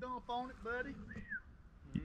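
A man's voice talking faintly, off at a distance, for about the first second, then a single short whistle-like note that rises and falls.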